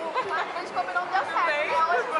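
Women's voices talking over each other, close to the microphone, with crowd chatter behind.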